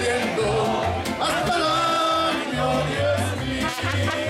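Live mariachi band playing: trumpets and violin over strummed guitars and a stepping bass line from a guitarrón, with a man singing.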